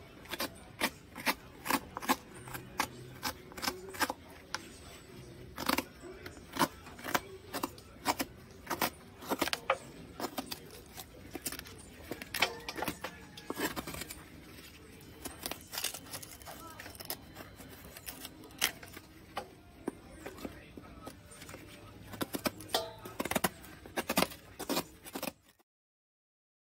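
Pulp being scraped out of a calabash gourd shell half into a metal basin: irregular sharp scrapes and knocks, about one or two a second, stopping abruptly near the end.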